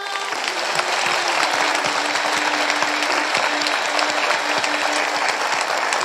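Large theatre audience applauding, a dense sustained clapping that swells over the first second and then holds steady. A low held tone sounds faintly under it through the middle.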